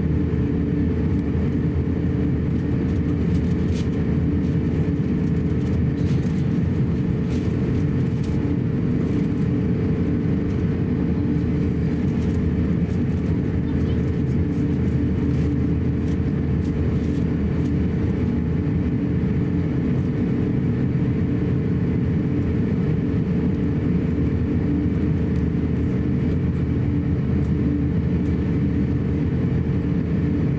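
Steady cabin noise of an Airbus A350-900 taxiing, with its Rolls-Royce Trent XWB engines at taxi thrust: a low, even rumble carrying several held tones, with faint occasional clicks and rattles.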